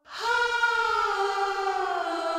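Layered back-vocals, a blend of a man's and a woman's voice processed with distortion, played back with a long reverb. A sustained sung chord starts suddenly and glides slowly down in pitch.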